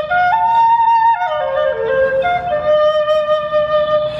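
End-blown replica of a paleolithic Ice Age flute played as a short melody of stepped notes. A high note comes about a third of a second in, lower notes follow, and the melody ends on a long held note.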